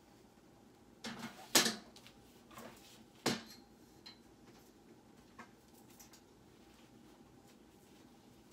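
Handling noise of things being moved and set down: a clattering knock about a second and a half in, a single sharp knock just after three seconds, then a few light taps.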